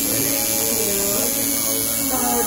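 Electric tattoo machine buzzing steadily as it tattoos a hand.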